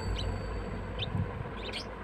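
Budgerigar giving a few short, high chirps while held in the hand, over a low rumble of handling.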